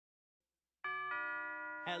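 Two-note doorbell chime, a ding-dong, struck about a second in and left ringing.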